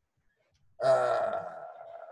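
A man's drawn-out wordless hesitation sound, like "э-э", starting just under a second in and trailing off.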